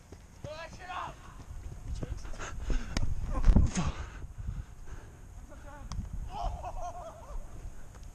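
Running footsteps on grass, heard through a body-worn action camera as irregular thuds with movement and wind rumble on the microphone, heaviest a few seconds in. Faint shouts from other players come through about a second in and again near the end.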